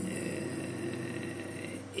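A short pause between a man's words: faint room tone with a few weak steady tones and no clear event.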